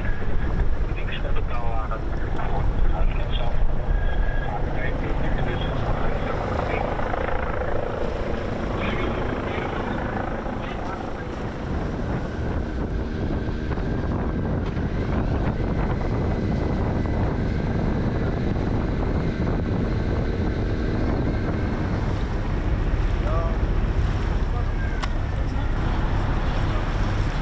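Steady low engine rumble from boats on the river, with wind buffeting the microphone. Faint voices in the first few seconds.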